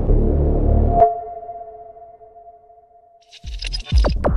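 Electronic logo-intro music: a pulsing bass beat stops about a second in with a sharp hit, leaving a ringing tone that fades away over a couple of seconds. New electronic sounds start to build near the end.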